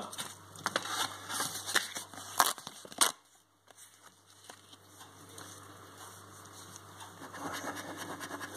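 A paper scratchcard being handled on a table, with light rustles and clicks, then a brief moment of silence. Near the end a coin starts scraping the next card's scratch-off panel.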